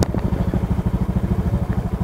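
Motorcycle engine idling steadily with a fast, even low putter, plus one brief knock at the very start.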